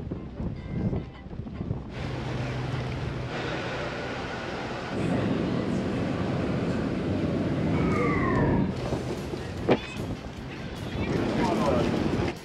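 Ambient noise on and around a car ferry: wind on the microphone, a low engine hum and indistinct voices, switching abruptly several times as short clips follow one another.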